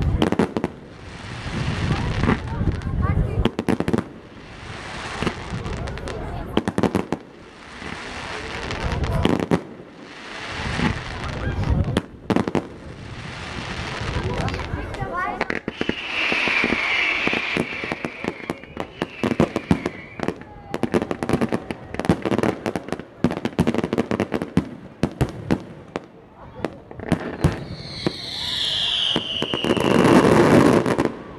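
Fireworks going off in quick succession: repeated swelling hisses, dense crackling and popping, and a falling whistle at about sixteen seconds and again near the end.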